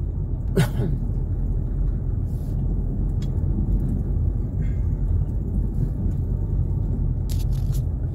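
Steady low rumble of a car driving slowly, engine and road noise heard from inside the cabin.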